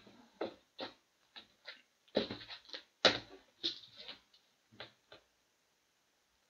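A run of short knocks and scrapes from a cardboard trading-card box being handled, about a dozen in all, the loudest about three seconds in. They stop a little past five seconds in.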